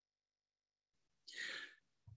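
Near silence, then one short, soft breath from a man about a second and a half in.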